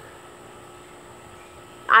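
A steady, quiet background hum and hiss with faint constant tones, then a woman begins speaking near the end.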